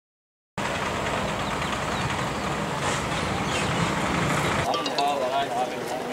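Outdoor street noise with a running vehicle engine rumbling underneath. About three-quarters of the way in, the sound cuts to a crowd of people talking.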